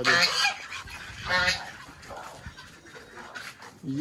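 A domestic duck quacking once, a short call about a second and a half in.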